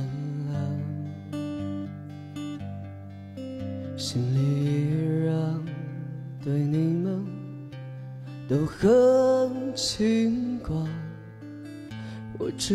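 Slow acoustic song: an acoustic guitar played under a man's singing voice, which comes in about four seconds in and is loudest on long held, rising notes near the end.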